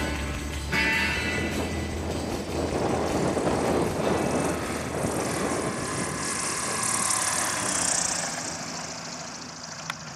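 Acoustic guitar music that stops about a second in, then a light propeller aircraft's engine running as the plane rolls along a grass strip, fading toward the end.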